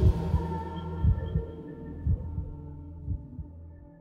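Closing fade-out of a dark ambient track: a low droning hum under soft double thumps about once a second, like a heartbeat, dying away.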